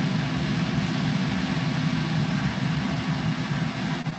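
A steady mechanical drone with a strong low hum, picked up by a participant's open microphone on a video call; it cuts off near the end.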